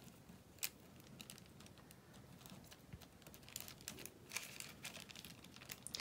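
Faint rustling and light ticks of glue-coated crepe paper strips being handled and pressed together by fingers, with one sharper click about half a second in.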